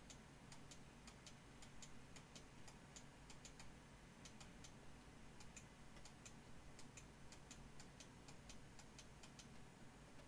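Near silence with faint, irregular clicks of a computer mouse, several a second and often in quick pairs, over a low steady hum.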